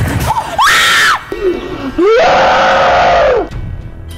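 A person screaming in fright at being jumped by the scary-snowman prankster: two screams, a short one about half a second in and a longer one of over a second starting about two seconds in, each rising then falling in pitch.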